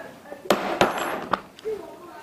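A homemade brogue perforating punch, three steel hole punches welded together, pressed by hand into leather. There is a sharp click, then about a second of crunching scrape with two more clicks as the punch tips cut through.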